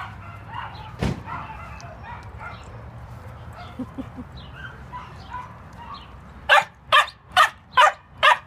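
A dog barking four times in quick succession, about two barks a second, near the end. A single sharp thump comes about a second in.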